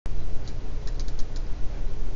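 About six light clicks at a computer, most of them bunched together near the middle, over a steady low hum.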